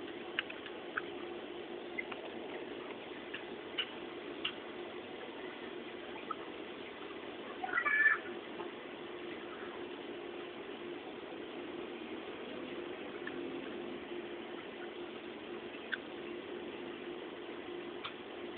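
Soft clicks of a Casio fx-350MS calculator's plastic keys being pressed, scattered through the first few seconds and once near the end, over a steady low hum. About eight seconds in comes a brief high-pitched squeak, the loudest sound.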